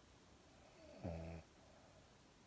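A sleeping pug snoring once: a single short, low-pitched snore about a second in.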